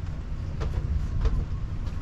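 Low, uneven rumble with a few faint taps, about two a second.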